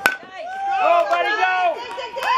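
A softball bat hitting a pitched ball: one sharp crack right at the start. Spectators then shout and cheer over each other, voices rising and falling, as the batter runs.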